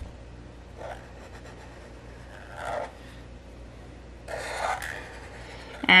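Black felt-tip marker drawing on paper: a few separate strokes, one short one about a second in and a longer one near the end.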